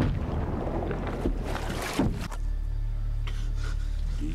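Film soundtrack sound effects: a noisy rush with a few short knocks, settling about two seconds in into a steady low rumble.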